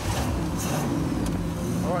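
Rock crawler buggy's Chevy 350 small-block V8 running steadily while the buggy stands ready to move off.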